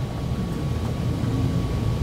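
A pause with no speech: a steady low rumble of room background noise, with a faint thin steady tone above it.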